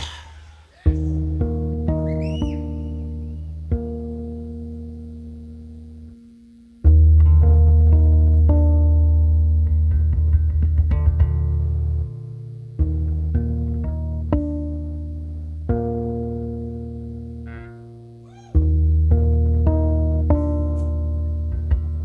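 Slow opening of a metal song: electric guitar and bass chords struck about every six seconds and left to ring and fade, with picked notes changing over them.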